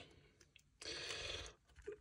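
A short breath drawn in, lasting about half a second, a little under a second in, between stretches of near silence.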